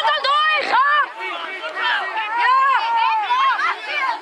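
Several high-pitched young voices shouting over one another in excited, wordless-sounding calls from the touchline of a youth rugby match, with a few low knocks in the first second.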